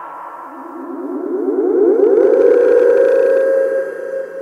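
Hard psytrance breakdown: a droning, siren-like synthesizer with no kick drum, swelling louder about a second in and growing brighter towards the end.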